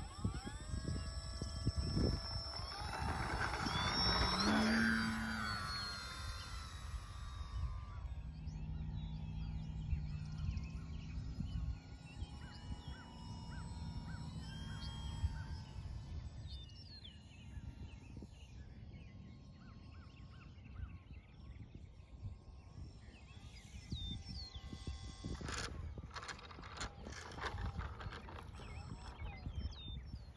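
Electric motor and propeller of a 48-inch electric-converted Pronto RC sport plane throttling up for takeoff: a whine that rises in pitch, loudest about four seconds in, then fades as the plane climbs away and stays faint for the rest.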